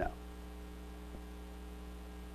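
Steady electrical mains hum, a low buzz made of evenly spaced tones, with one faint tick about a second in.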